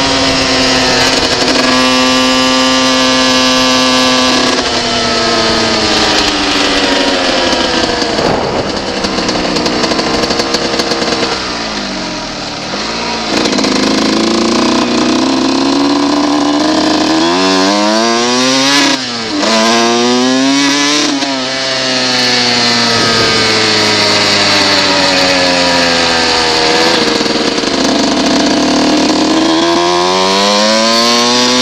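1990 Honda CR125's single-cylinder two-stroke engine being ridden hard, its pitch climbing and dropping with throttle and gear changes. It holds a steady pitch for a couple of seconds, eases off around the middle, and is blipped up and down quickly several times about two-thirds of the way through before climbing again near the end.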